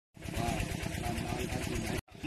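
A small engine running steadily with an even pulse, with faint voices behind it.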